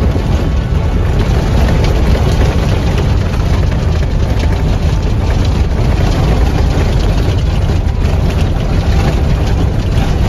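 Loud, steady cabin noise of a safari 4x4 on a gravel dirt track: the engine running under a dense low rumble of tyres and body over the rough surface.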